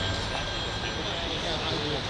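Steady low rumble of outdoor city noise, with faint murmured voices close by.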